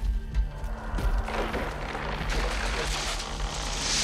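Film soundtrack: a dark score of low held notes under a rushing swell of noise that builds and grows louder toward the end.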